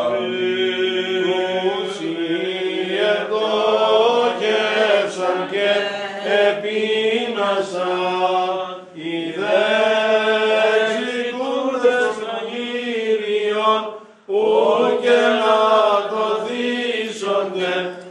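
Greek Orthodox Byzantine chant sung by church chanters, a melodic line moving over a steady held drone note (the ison). The singing breaks off briefly twice, near the middle and about three-quarters of the way through.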